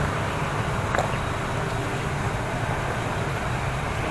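Steady outdoor background noise, a low rumble with a hiss, and a faint click about a second in.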